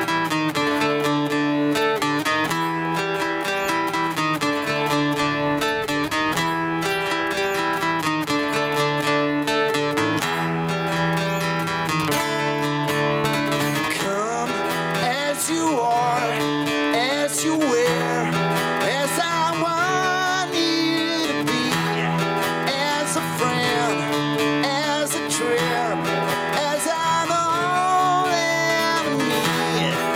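Acoustic guitar strummed in a steady rhythm of chords. From about halfway through, a man's singing voice comes in over the guitar.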